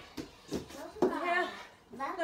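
A young child's voice, a drawn-out call that rises and falls in pitch about a second in, with no clear words.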